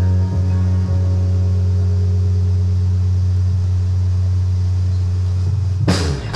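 Live band music: a loud, steady low drone holds while ringing guitar notes fade away, then the full band comes in with drums just before the end.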